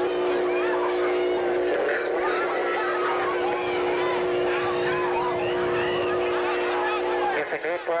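Football crowd of many spectators yelling and cheering together. Underneath runs a steady hum of several held tones that cuts off near the end.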